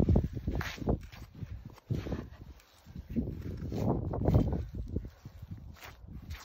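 Knife cutting and gloved hands pulling the hide away from a wild goat's carcass while caping it out: irregular rustling and handling noises, with a short quiet spell near halfway.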